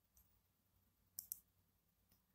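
Two quick clicks of a computer mouse button, close together, a little over a second in, against near silence.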